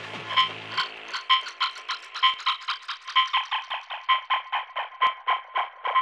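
Breakdown in a tech-house DJ mix: the kick and bass drop out and a bare, clicky percussion loop with a pitched tick plays alone at about four to six hits a second, growing denser toward the end.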